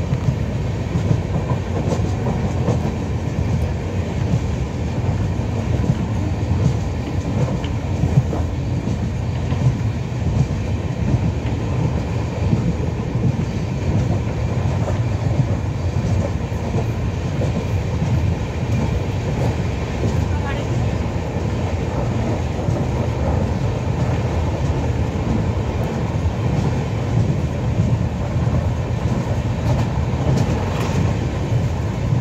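Passenger train running steadily, heard from inside the coach at an open barred window: a continuous loud rumble of the wheels on the track.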